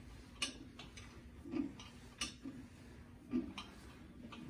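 Rogue reverse hyper machine swinging through a rep, with faint, irregular clicks and clinks from its weighted pendulum arm and plates.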